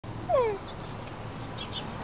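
A short animal call that falls in pitch, loud and over in about a quarter of a second, followed near the end by two brief high chirps.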